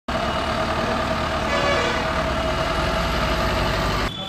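Engine of a police SUV running as it drives past close by, a steady mechanical drone with a heavy low rumble. It starts and stops abruptly.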